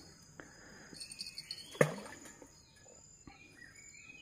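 Steady high-pitched buzzing of insects in tropical riverside forest, with faint bird calls. Small clicks of fishing tackle being handled as a hook is baited, the loudest a sharp click a little under two seconds in.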